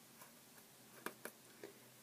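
Near silence with a few faint, short ticks, the loudest a little after a second in, from hands working Marley hair through a foam bun donut.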